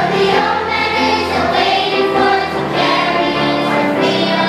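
Children's school chorus singing a spiritual together, many voices sustaining and moving between notes in unison.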